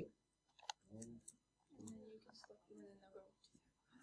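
Faint, distant speech of a student in the room, with a single sharp click about two-thirds of a second in.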